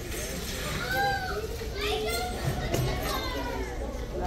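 Children's voices, high-pitched calls rising and falling as they play and talk, over a steady background hum.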